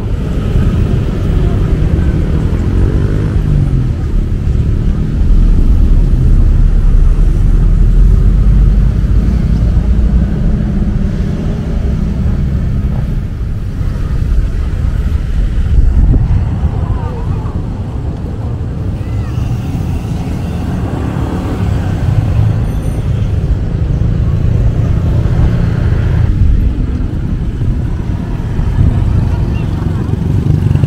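Road traffic: cars and motorcycles passing, a steady low rumble that swells louder about 5 to 10 seconds in and again around 16 seconds.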